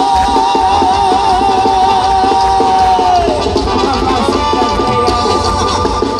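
Live Mexican banda music with brass and a sousaphone: two parts hold a wavering note together for about three seconds, then a new, higher held note comes in over the steady beat.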